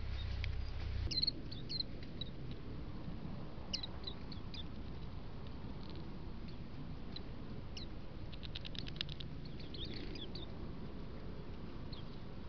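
Small birds giving short, scattered high chirps, with a quick run of ticks about nine seconds in, over a steady outdoor hiss. A low rumble stops abruptly about a second in.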